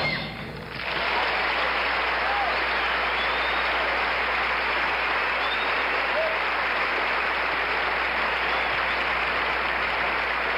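Music stops at the very start; about a second in, a theatre audience breaks into steady applause, with a few short cries heard over it.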